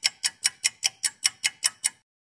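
Clock-ticking sound effect: fast, even, crisp ticks, about five a second.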